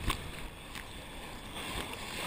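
Muffled sloshing of sea water against a camera at the water's surface in the surf, with a low rumble, a sharp splash-hit just after the start and a lighter one about a second in.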